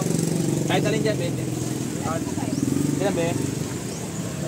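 Short fragments of people talking over a steady low, finely pulsing rumble, like an engine running.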